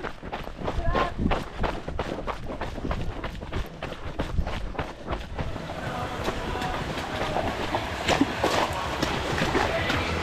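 A trail runner's quick, regular footfalls on a dirt and gravel path, with breathing and jostling from the running camera. From about halfway on, the footfalls blur into a murmur of voices in the background.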